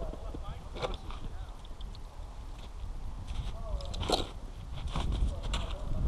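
Faint voices of people talking over a steady low rumble, with a few short sharp knocks.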